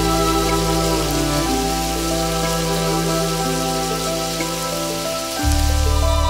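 Steady sizzle of peeled shrimp frying in butter in a nonstick pan, under louder background music of held notes. The music's deep bass note drops out about a second and a half in and comes back strongly near the end.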